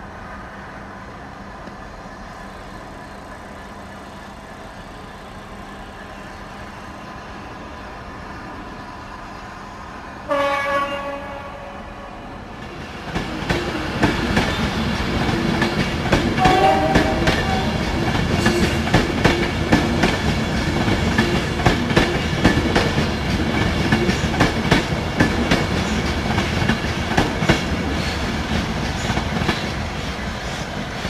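Steam locomotive 35028 Clan Line, a Merchant Navy class Pacific: a short whistle blast a third of the way in, then the engine starts away, its exhaust beats and the hiss of open cylinder drain cocks coming in loud and staying loud as it draws nearer.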